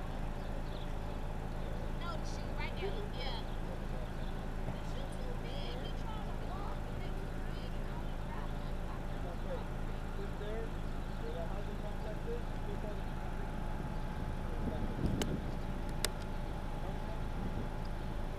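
Steady low hum of idling vehicles, with faint indistinct voices and short chirps over it. Near the end, a thump and then a sharp click about a second apart.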